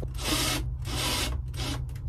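Cordless drill driving a screw into the wooden skylight support frame, in two grinding runs, the second about a second long.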